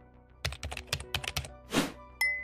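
Computer keyboard typing sound effect: a quick run of key clicks lasting about a second, then a short swish near the end, over background music.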